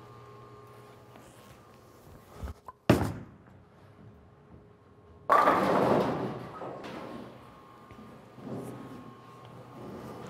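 Ebonite GB4 Hybrid bowling ball set down on the lane with a sharp thud about three seconds in, then, a couple of seconds later, a sudden loud crash of the ball hitting the pins that dies away over about a second.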